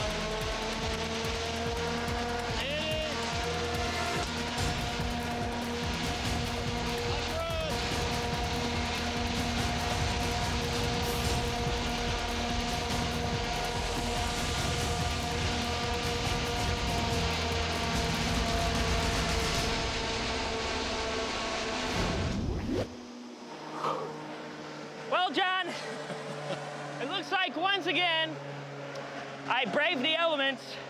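A large effects wind machine fan blowing at full force, a loud rushing wind noise mixed with background music holding steady chords, and a person crying out briefly twice. About 23 seconds in it cuts off suddenly to a quieter stretch with bursts of voices or laughter.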